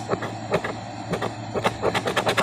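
A large metal coin scraping the coating off a scratch-off lottery ticket, in quick irregular strokes several times a second.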